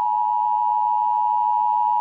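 A steady, unbroken two-note electronic beep just under 1 kHz: a mock Emergency Broadcast System attention signal added in the edit.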